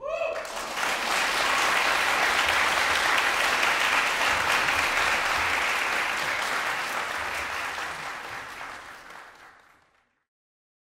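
Concert-hall audience applauding right after the string ensemble's last note. The applause rises within the first second, holds steady, then fades out over the last few seconds.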